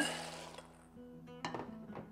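Dried fava beans poured from a ceramic bowl into a stainless-steel bowl: a short rattling rush that fades within about half a second, then a light clink of dishware about a second and a half in. Soft background music runs underneath.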